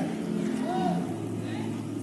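Soft sustained keyboard chords of several low notes held steadily, a deeper note coming in about halfway, with faint voices from the congregation.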